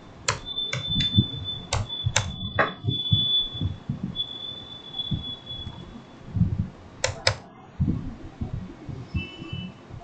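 Computer keyboard and mouse clicks in short runs: about six sharp clicks in the first three seconds and two more a little after seven seconds in. A faint thin steady high tone runs under the first half, and irregular low thumps sound throughout.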